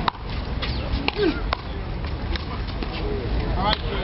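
Sharp smacks of a small rubber handball struck by bare hands and rebounding off the wall and concrete court, several over a few seconds, over a steady low rumble.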